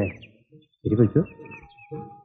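Small birds chirping in the background, with a short spoken word about a second in and a held music note coming in near the end.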